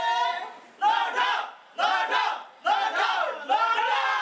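A group of voices shouting together in unison, four short falling cries about a second apart: a chorus of ceremonial shouts.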